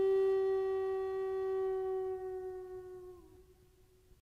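A single long note on a Native American flute, held steady and then fading out about three seconds in with a slight droop in pitch.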